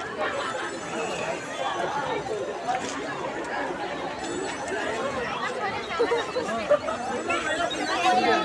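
Crowd chatter: many people talking at once in a steady babble of overlapping voices, with no single clear speaker.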